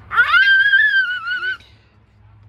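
A toddler girl screaming in fright: one high-pitched shriek held for about a second and a half that cuts off abruptly.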